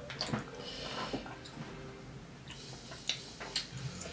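Quiet handling sounds of food and packaging on a table: a few soft clicks and a brief faint rustle over a low steady room hum.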